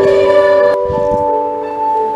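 Electronic keyboard playing sustained chords in a bell-like voice, with a change of chord a little under a second in.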